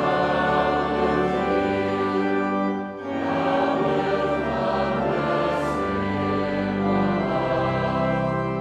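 Congregation singing a psalter hymn in unison with organ accompaniment. The singing breaks briefly for a breath between lines about three seconds in.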